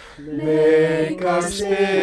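Mixed-voice a cappella group singing sustained chords in close harmony, with no instruments. A short breath pause at the very start, then the voices come back in together.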